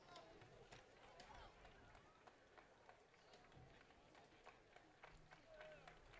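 Near silence: faint ballpark ambience with faint distant voices and a few light clicks.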